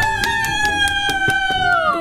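A high voice holding one long cheer that slides down at the end, over quick, steady hand clapping celebrating a winner.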